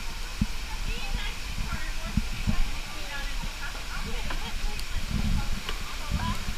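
Small birds chirping and calling in a walk-through aviary, many short, scattered chirps, over faint voices of people nearby and a low rumble.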